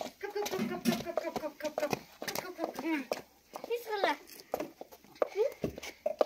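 Young children's voices: high-pitched chatter and calls that rise and fall, broken by short pauses, with a few sharp taps between.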